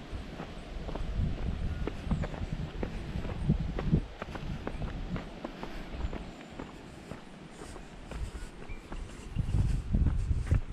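Footsteps on a paved road at a steady walking pace, about two steps a second, with wind rumbling on the microphone in the first half.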